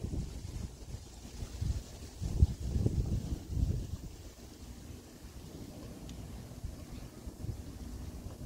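Wind buffeting the microphone: a low, gusty rumble that swells a couple of seconds in and eases off in the second half.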